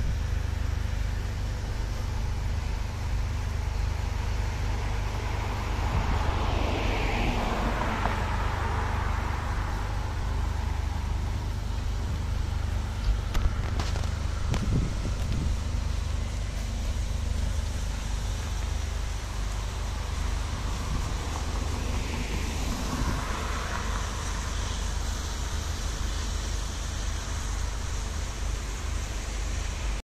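Two road vehicles passing by, one about seven seconds in and another about twenty-three seconds in, each swelling and fading, over a constant low rumble.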